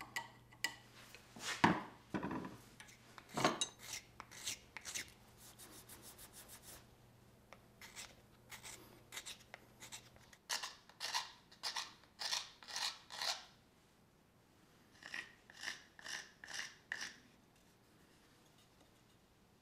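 A small carving knife shaving a wooden spoon: short scraping cuts in quick runs of several strokes a second, with brief pauses between runs.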